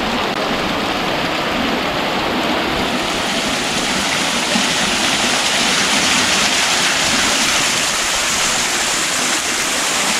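Small waterfall splashing down a mossy rock face into a pond: a steady rush of falling water that grows a little louder about halfway through.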